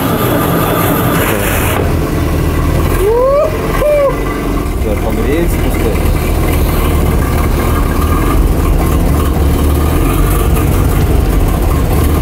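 GAZ-69 engine running steadily, having just caught after being very hard to start.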